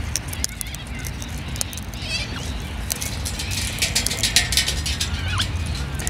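Sulphur-crested cockatoo eating seeds from a hand: a run of irregular small clicks and taps from its beak, thickest about four seconds in, over a steady low rumble, with a short faint bird call about two seconds in.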